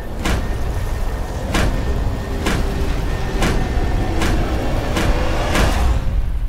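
Trailer storm sound design: a deep, steady rumble with a sharp knock about once a second and faint held tones underneath.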